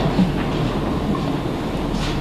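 Steady background room noise with a low hum, with no speech over it.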